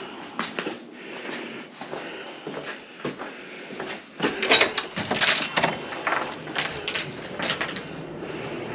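Footsteps, then the clicks of a door's lever handle and latch about four seconds in as the door is pulled open, setting the metal wind chimes hanging on it ringing briefly.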